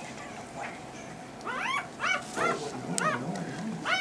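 A Rottweiler puppy whining: a string of about six short, high-pitched cries, each rising and falling in pitch, starting about a second and a half in.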